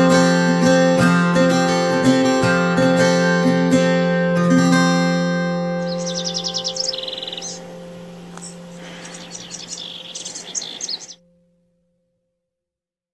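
Acoustic guitar background music, plucked and strummed, ending about five seconds in on held notes that fade away. Birds then chirp in quick high trills until the sound cuts off suddenly near the end.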